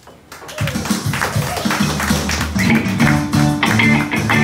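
Electric guitar starting to play about half a second in: picked, rhythmic notes over a repeating low-note pattern, the opening of the song.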